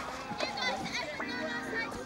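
Background music with young people's voices calling out and chattering over it.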